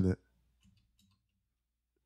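A man's last spoken word at the very start, then near silence with a few faint clicks of a computer keyboard as someone searches a PDF document.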